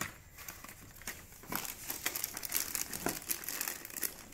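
Plastic packaging and bubble wrap crinkling and rustling as they are handled, in irregular crackles that grow busier after the first second.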